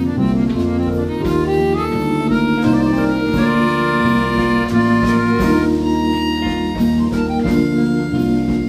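Live jazz-folk ensemble of saxophone, accordion, acoustic guitar, bass guitar, keyboard and drums playing an instrumental piece, with sustained reedy chords under a moving melody.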